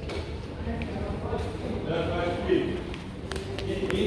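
Indistinct voices in a large hall with a hard stone floor, with a few sharp footsteps near the end.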